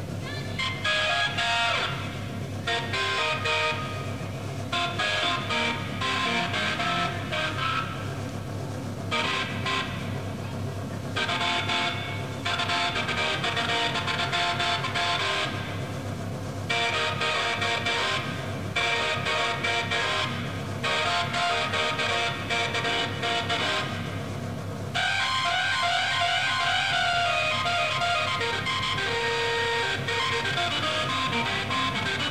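Distorted Hammond organ played solo in held chords, broken by short gaps, over a steady low drone; near the end it runs on into a continuous, fuller passage.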